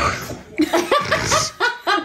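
Several people laughing together in short repeated bursts, after a brief throaty sound at the very start.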